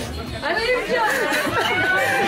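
Speech only: several voices talking over one another, close to the microphone, with background chatter.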